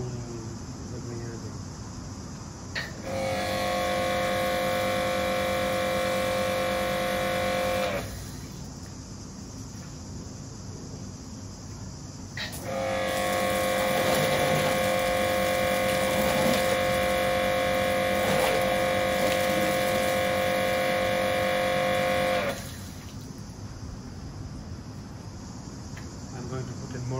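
Kärcher K7 pressure washer's motor and pump running with a steady whine in two spells, about five seconds and then about ten seconds. Each spell starts with a click as the trigger is pulled, and the machine drives water and soap through a foam cannon.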